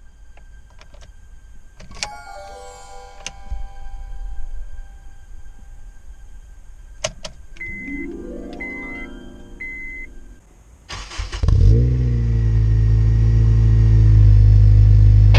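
A Honda Civic Type R EP3's 2.0-litre four-cylinder engine with an HKS exhaust starting about eleven seconds in: a brief flare, then a loud steady idle. Before it come three short beeps about a second apart.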